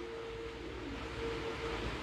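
Low steady room noise with a thin steady hum that stops shortly before the end.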